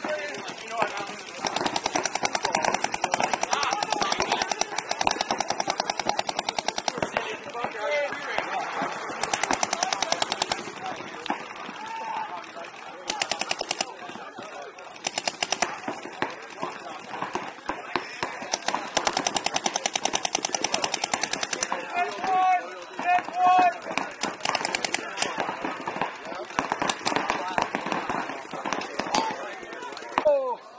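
Paintball markers firing in rapid strings of shots, broken by short pauses between volleys.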